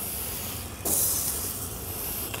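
Vegetables sizzling on a hot gas grill, a steady hiss, with a louder rush of hiss about a second in that lasts under a second.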